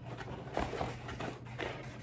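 Faint scraping and rustling of a molded pulp packaging tray against its cardboard box as it is worked loose by hand, with a few soft taps.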